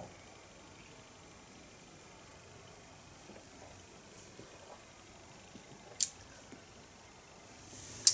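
Faint room tone in a small room during a pause, broken by a single sharp click about six seconds in.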